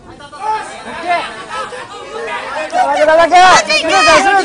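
Speech only: voices talking, getting louder and higher-pitched in the last second or so, with a repeated call near the end.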